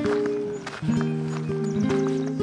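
Background music: acoustic guitar with plucked notes, each ringing briefly before the next.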